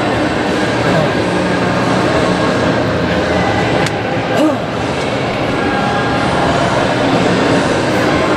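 A loud, steady rumbling noise that does not let up, with faint voices mixed into it.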